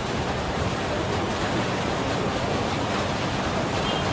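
Steady background hiss, an even rush of noise at moderate level, with faint indistinct voices underneath.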